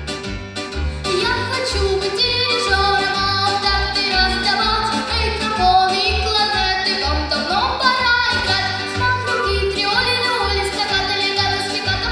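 A girl singing into a microphone over a recorded backing track with a steady, pulsing bass beat; her voice slides up in pitch a little past the middle.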